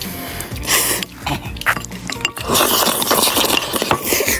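Background music with a steady low accompaniment, broken by short noisy bursts and a few clicks, the longest a little past the middle.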